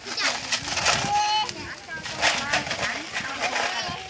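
A man talking close to the microphone.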